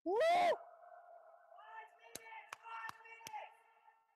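A spectator's loud "Woo!" cheer, rising in pitch and lasting about half a second, echoing in the large hall. After it comes a faint steady hum of several tones and, from about halfway in, a run of sharp clicks about two and a half a second.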